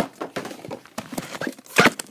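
Clear plastic blister packaging from a Funko Pop box being handled and cleared away: a run of crinkles and light clicks, with a louder crackle near the end.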